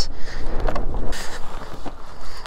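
Wind rumbling on the microphone, with a few faint knocks of handling.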